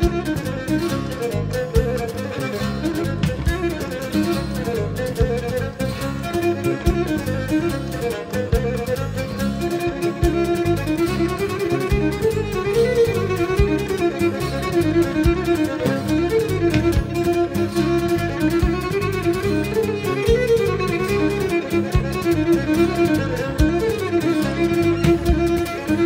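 Instrumental Cretan dance music, a Malevyziotikos: a bowed string instrument plays a lively, ornamented melody over a steady rhythmic accompaniment.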